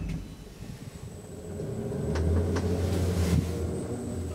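Old ASEA Graham traction elevator, KONE-modernised, starting off and travelling: a low rumble that builds from about a second in and eases near the end, with a couple of faint clicks and a thin, steady high tone.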